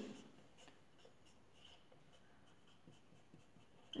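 Faint strokes of a marker pen drawing on paper, with short scratches as the lines are drawn.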